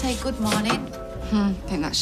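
Kitchen clatter: a few sharp knocks of utensils and crockery being handled at the counter, with a voice and the held notes of music under them.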